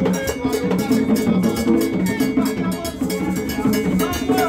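Percussion music in a fast, steady rhythm, led by a cowbell-like metal bell struck over drums, with low sustained tones underneath.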